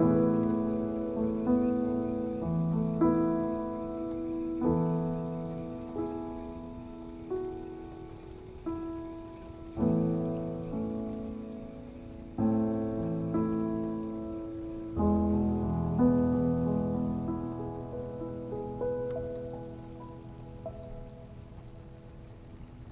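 Solo piano playing a slow, gentle piece, chords struck every second or two and left to ring and decay, over a faint steady patter of rain. The piano grows softer and dies away near the end.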